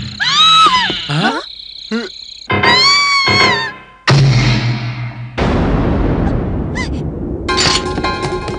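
Cartoon soundtrack effects: several high-pitched shrieks that rise and fall, then a sudden loud hit about four seconds in with a low rumble, followed by a dense noisy crashing sound. Dramatic music comes in near the end.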